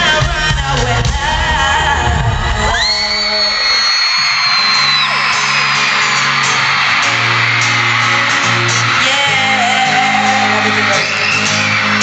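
Live pop concert music echoing in an arena, with a band playing bass and drums. From about three seconds in, a dense wash of crowd screaming rises over sustained low keyboard notes.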